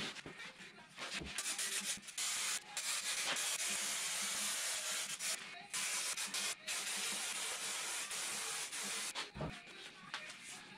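Aerosol spray can hissing in several long bursts with brief breaks between them, spraying onto the back of a carpeted panel.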